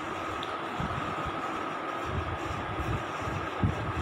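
Steady background noise, a low uneven rumble with hiss and a faint high hum, with no speech.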